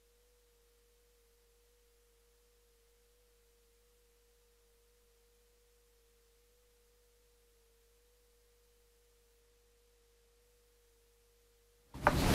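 Near silence, with one faint steady tone near 500 Hz that wavers slightly in pitch.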